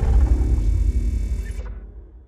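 Deep rumbling boom of a logo-intro sound effect dying away, its low rumble fading steadily until it is nearly gone near the end.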